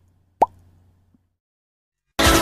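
A single short pop sound effect about half a second in, sharp at the onset and rising briefly in pitch, the sting that goes with an animated channel logo. A faint low hum trails it and dies away, then near silence.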